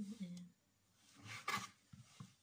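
A kitchen knife cutting the crust off a slice of white bread on a plastic cutting board: one brief scrape with a sharp tap about one and a half seconds in, after a quiet spell.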